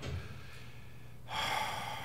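A person's quick intake of breath close to a microphone, a short hiss lasting about half a second, near the end, over faint room tone; it is a breath drawn before speaking again.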